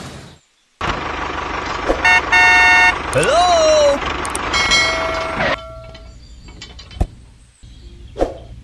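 Dubbed vehicle sound effects: a steady engine-like running noise with two horn toots, about two and three seconds in. A pitched glide rises and falls around three seconds, another horn-like tone comes near five seconds, and a single sharp click sounds about seven seconds in.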